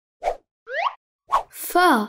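Cartoon sound effects as an animated animal pops onto the screen: a short pop, a quick rising glide in pitch, and a second pop. Near the end a voice begins sounding out the letter "fa".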